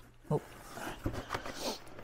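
Cardboard box and a plastic blister-packed flashlight rustling and scraping as the package is pulled out of the box, with a short spoken "Oh" at the start.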